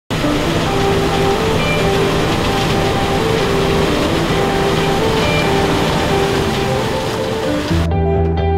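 Music with held notes over a steady rushing noise from a John Deere S680 combine harvester working in the field; the machine noise cuts off suddenly near the end, leaving only the music.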